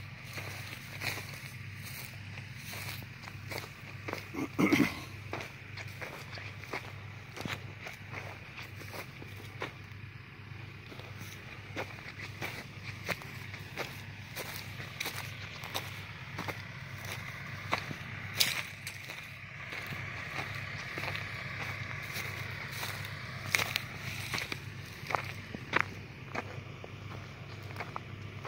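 Footsteps on dry soil and stubble: an uneven string of small crunches and clicks, over a steady low hum.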